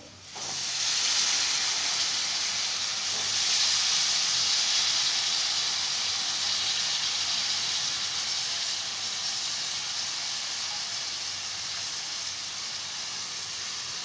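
Freshly washed, wet val bean pods (hyacinth beans) tipped into a hot kadai of tomato-onion masala and sizzling: a steady hiss that starts just after the opening and slowly quietens over the following seconds.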